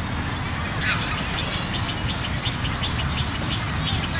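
A small bird chirping: a quick run of short high notes, about three a second, over a steady low background rumble.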